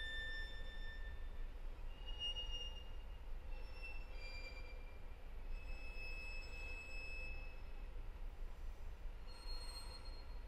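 Solo violin playing a slow series of very soft, high, thin held notes, each about a second long and stepping to a new pitch, over a low steady room rumble.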